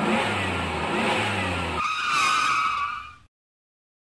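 Motor vehicle engine running with a low rumble, then about two seconds in a high wavering squeal like tyres skidding, which fades and cuts off abruptly a little after three seconds.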